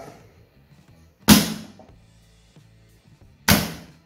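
Magnetic contactors of a star-delta starter control circuit switching, heard as two loud clacks about two seconds apart. The first comes as the start button pulls in the main and star contactors. The second comes as the 2-second timer drops out the star contactor and pulls in the delta contactor.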